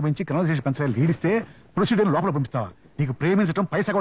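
Men's speech in film dialogue over a steady, high, pulsing chirring of crickets in the background.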